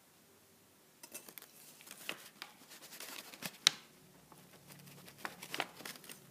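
Handling noise from a phone being held and adjusted by hand: fingers rubbing and tapping on it in a run of small clicks and rustles. They start about a second in, and the sharpest click comes a little past halfway.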